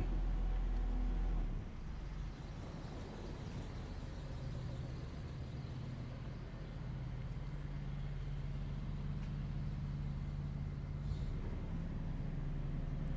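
Steady low rumble of motor traffic with an engine hum, a little stronger in the second half.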